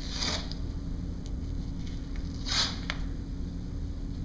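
Elastic bandage wrap being pulled off its roll and stretched around a thigh: two short rasps, one at the start and one about two and a half seconds in, with a light click just after the second.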